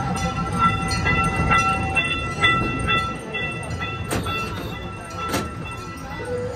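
Small tourist train running on its track: a low rumble with a high ringing tone and regular clicks about twice a second, the ringing fading after a few seconds, then two sharper knocks near the end.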